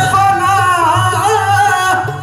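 Qawwali singing: a male voice holds a long, wavering, ornamented note over steady harmonium accompaniment.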